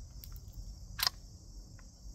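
Small metallic clicks from reloading a Rossi RS22 semi-automatic .22 rifle, with one sharper click about a second in. Insects drone steadily in the background.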